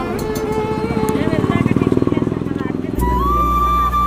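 Several people talking over an engine running with a fast, even pulse. About three seconds in, background music cuts in with a held flute note over a steady bass.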